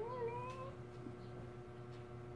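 A domestic cat meowing once, a single call rising in pitch that ends under a second in, over a faint steady hum.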